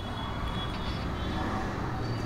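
Steady low background rumble and hiss with no distinct events.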